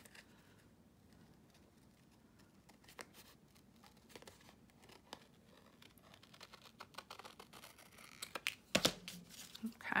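Scissors snipping a small tab out of tan folder paper: a run of faint, short snips, with the paper rustling in the hands and a louder knock near the end.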